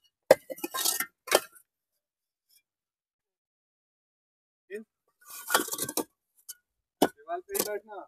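Hard clinks and knocks among a stack of fired clay bricks as a metal snake hook probes between them, in short clusters in the first second or so and again in the last few seconds, with a few seconds of silence in between.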